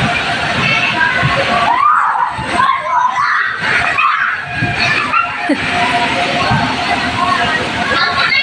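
Busy background babble of children's voices and chatter, with no single sound standing out.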